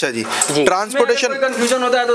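A man talking, with a few light clinks in the first half second.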